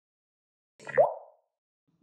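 A single short sound effect with a quick upward pitch slide, about a second in, fading within half a second.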